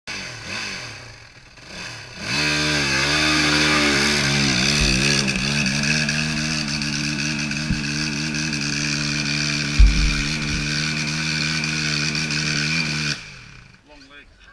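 Yamaha WR450F's single-cylinder four-stroke engine comes in loud about two seconds in. It revs up and down for a few seconds as the dirt bike climbs a muddy hill, then holds high revs steadily, with a few low thumps. The sound cuts off suddenly near the end.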